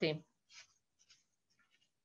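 A woman's voice finishing a spoken phrase, then a pause holding a few faint, short noises.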